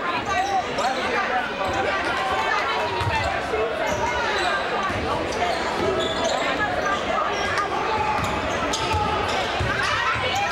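Basketball dribbling on a hardwood gym floor, with voices from the crowd and players calling out throughout, all echoing in the large gym.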